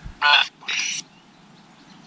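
Two brief voice-like bursts from a Necrophonic spirit-box app on a phone speaker, the second more hissing than the first, which the ghost hunter takes for a spirit saying "Beth" and "shh".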